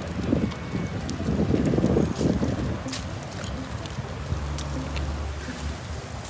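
Wind buffeting a phone microphone over the low rumble of a stroller rolling along a paved path, with a few faint clicks.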